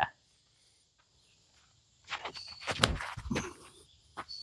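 Footsteps on grass from a disc golfer's run-up and throw, starting about two seconds in, with one sharp click near the end of the run.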